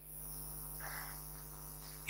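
Faint steady electrical hum and hiss from the microphone and sound system, with a faint brief sound about a second in.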